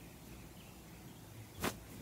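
A face wipe rubbed across the camera lens and microphone: a faint hush, then one short, sharp brushing swish near the end.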